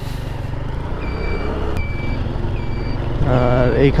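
Single-cylinder engine of a TVS Stryker 125cc motorcycle idling steadily while the bike stands still. From about a second in, a short high electronic beep repeats at an even pace over it.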